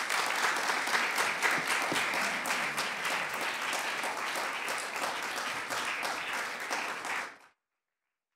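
Audience applauding, many overlapping claps that cut off suddenly near the end.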